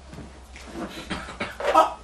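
Speech only: faint low voices and a soft chuckle, then a man's short "Aa" near the end.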